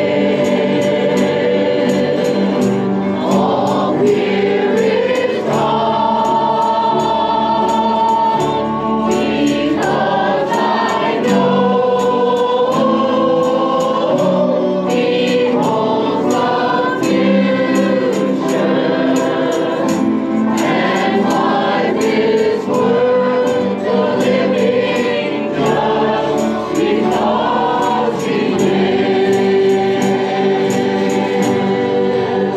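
Church choir singing a gospel song into microphones, with instrumental accompaniment underneath and a steady light beat.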